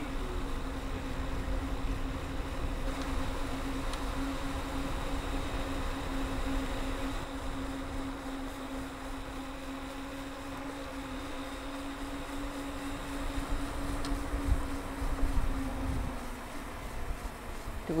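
Electric bike motor humming at one steady pitch while cruising, over a low rumble of wind and tyres on tarmac; the hum cuts out a second or so before the end.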